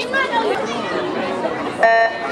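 Spectators chattering around a swimming pool, then a short electronic beep near the end: the starting signal for a swim race.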